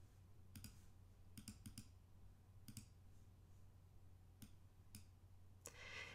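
Faint computer mouse clicks, a handful scattered irregularly, a few in quick succession, over near-silent room tone.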